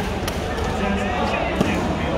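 Badminton racket strikes on a shuttlecock during a rally: short sharp knocks, the loudest about one and a half seconds in, over steady background chatter.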